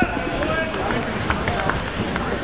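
Busy candlepin bowling alley: balls rolling down the lanes and pins clacking, a few sharp clacks scattered through, over a steady hubbub of voices.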